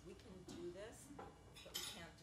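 Clatter of dishes and cutlery, with a short, sharp clink near the end, under a woman's voice on a microphone.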